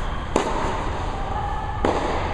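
Tennis ball struck by a racket twice, about a second and a half apart, each hit a sharp pop with a short echo from the indoor court, over a steady background hum.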